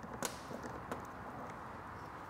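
A couple of light clicks as a Phillips screwdriver turns the front screw of a scooter footpeg bracket, over low room noise.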